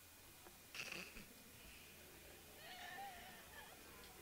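Near silence in a large hall, with a brief rustle about a second in and faint, distant wavering voices of people chatting near the end.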